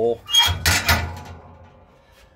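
A short clatter of knocks and rattling from metal parts being handled, starting about a third of a second in and dying away within about a second.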